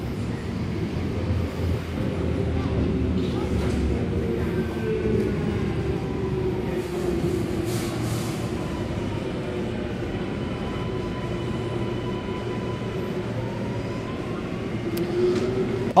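Alstom Metropolis electric metro train pulling into an underground platform behind screen doors and slowing to a stop, with a steady rumble and a faint motor whine that slowly falls in pitch and rises again near the end.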